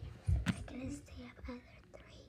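A girl's voice close to the microphone: a short spoken word, then whispering.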